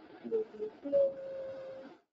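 A woman humming: a short note, then a note held for about a second that falls slightly in pitch.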